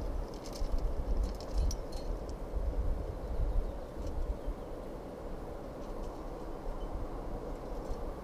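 Wind buffeting the microphone over a steady rushing background, with a few light metallic clinks of climbing hardware (carabiners and quickdraws on a harness gear rack) in the first couple of seconds.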